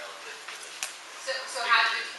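Indistinct speech in a room: people talking, with one voice clearer and louder toward the end, and a single faint click a little before the middle.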